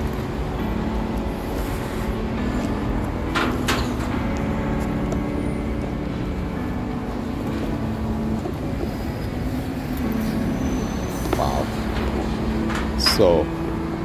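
Steady road-traffic rumble with a low engine hum running through it, and indistinct voices of people close by now and then, clearest near the end.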